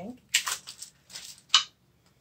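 New unfinished wooden needlepoint stretcher bars being handled, with a few short rustles, then one short, sharp sniff about one and a half seconds in as the fresh wood is held up to the nose.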